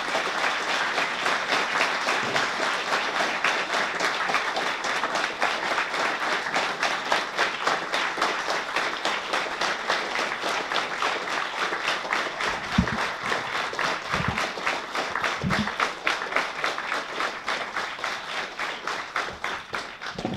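Audience applauding: dense, steady clapping, easing slightly near the end. A few short low thumps sound a little past the middle.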